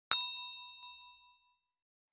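Bell-like 'ding' sound effect from a subscribe-button animation: one bright metallic strike ringing at several pitches at once, fading away over about a second and a half.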